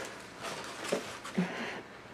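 Faint eating and handling noises as sauced chicken wings are pulled apart over a foam takeout container: a few soft clicks and small mouth sounds, with two brief low sounds about a second and a second and a half in.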